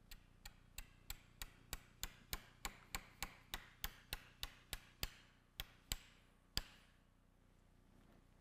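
A mallet tapping the inserter of a Knee FiberTak suture anchor, driving the anchor into bone: about twenty sharp strikes, roughly three a second, each with a short ring. A few are spaced more widely near the end, and the last strike is the loudest.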